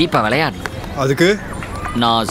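Man speaking in Tamil film dialogue.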